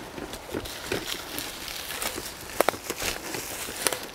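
Footsteps on a forest path: dry leaves and twigs crunching and crackling irregularly underfoot, with a few sharper snaps.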